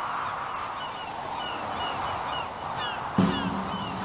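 Seabird cries, about two a second, over a steady wash like surf, with music starting near the end.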